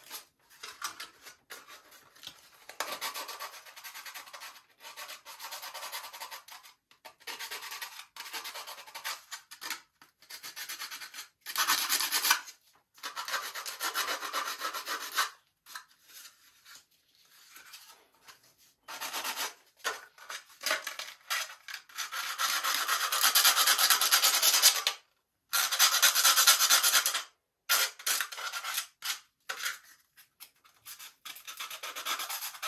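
Hand sanding with folded 80-grit sandpaper, scuffing the surface of a plastic model-airplane gear pod to give filler something to grip: irregular runs of rubbing strokes with short pauses between them, loudest in the last third.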